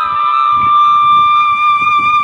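Background flute music, with one long note held steady.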